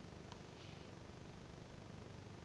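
Very quiet room tone with one faint small click about a third of a second in.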